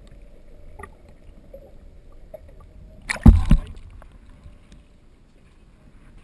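Underwater sound through a GoPro housing: a faint steady low hum, and about three seconds in two loud, low thumps a quarter-second apart.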